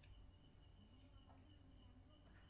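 Near silence: a faint low hum with a faint, steady high-pitched whine.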